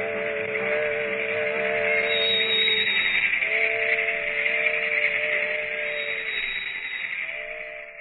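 Steam-train sound effect: three long train-whistle blasts, each a chord of a few steady tones held for two to three seconds, over a steady hiss like escaping steam. It closes a train-themed orchestra novelty number.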